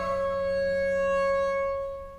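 Bowed double bass holding a single high note, steady in pitch, that fades away near the end.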